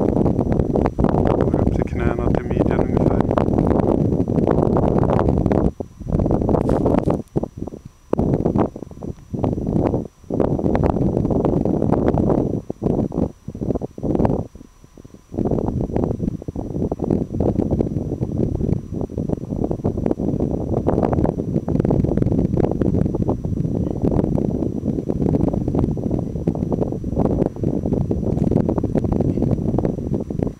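Gusty wind buffeting the camera microphone: a loud, low rumble that rises and falls, dropping away briefly a few times between gusts.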